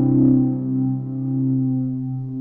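Electronic keyboard synthesizer playing slow, held pad chords in an 80s film-score style. A new chord with a low bass note comes in at the start and is sustained, swelling and easing in loudness.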